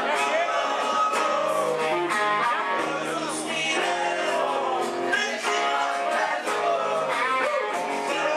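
Live band music with guitar to the fore, played without a break.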